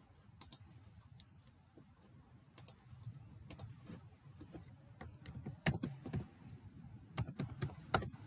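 Computer keyboard typing, faint: scattered single keystroke clicks, then a quicker run of keystrokes in the last few seconds as a short word is typed.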